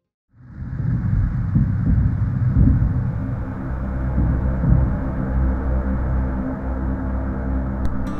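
A loud, steady low rumble that starts abruptly just after the start, with a faint click near the end.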